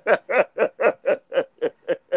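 A man laughing: a steady run of short, evenly spaced "ha" pulses, about four a second, at an even pitch.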